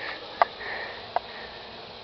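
Faint steady background hiss with two brief, quiet sounds, one about half a second in and one just over a second in.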